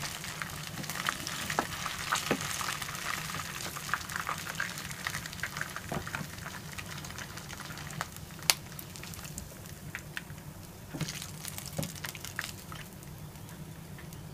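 Chicken lollipops sizzling and crackling in hot sunflower oil in a nonstick kadai, with occasional sharp clicks and scrapes of a wooden spatula and a steel spoon against the pan as the fried pieces are lifted out. The loudest click comes about halfway through.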